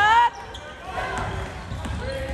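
Basketball being dribbled on a hardwood gym floor, a few bounces under the murmur of spectators' voices. A brief, loud, high-pitched sound comes right at the start.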